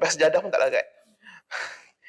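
A man speaking for under a second, then a short audible breath, a sigh.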